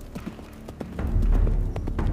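Hooves of several horses clip-clopping on a dirt road, in uneven overlapping steps. A low, rumbling soundtrack swell comes in about a second in.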